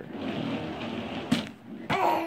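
Plastic Sit 'n Spin base scraping over a rug as it is pushed and shifted, a steady rough noise for about a second and a half that ends with a sharp click. A toddler's brief vocal sound follows near the end.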